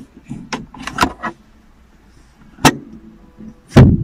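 Several sharp plastic clicks from handling a Citroën C3-XR's sun visor and its vanity-mirror cover, then a louder, heavier thump near the end as the visor is swung up against the headliner.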